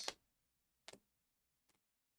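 Near silence, with one faint click about a second in and a fainter tick later: plastic card top-loaders knocking together as a stack of cards is flipped through by hand.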